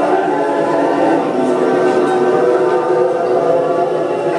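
Choral music: many voices singing long, sustained notes together.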